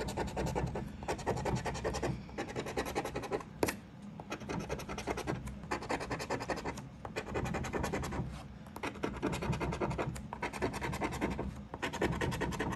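A plastic scratcher tool scraping the coating off a lottery scratch-off ticket in fast back-and-forth strokes, in several spells with short pauses between them.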